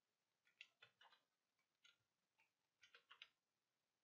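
Faint clicks of a computer mouse, about a dozen short sharp clicks in small clusters over roughly three seconds, as settings are clicked through in software.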